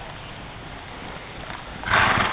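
A horse trotting on soft arena footing, with a loud snort near the end as it passes close with its head low.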